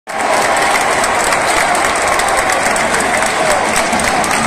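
Large football-stadium crowd applauding: a dense, steady clatter of many hands clapping, with some voices mixed in.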